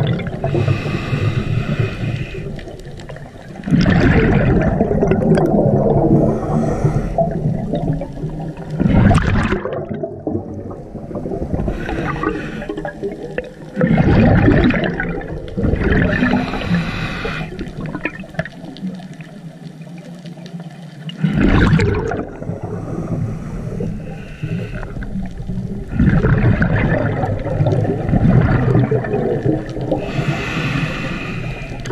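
Scuba diver breathing through a regulator underwater: a hiss on each inhale and a loud rush of bubbles on each exhale, repeating about every four to five seconds.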